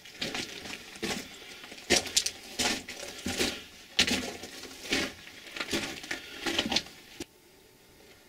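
Footsteps crunching on loose rock and gravel on a mine tunnel floor, about one step every 0.7 seconds, stopping about seven seconds in.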